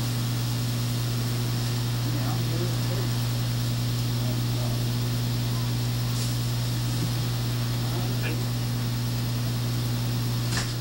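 A steady low electrical hum with a faint higher overtone and a hiss underneath, with faint voices in the background.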